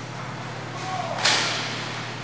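A roller hockey puck struck hard: one sharp crack about a second in, echoing through the rink.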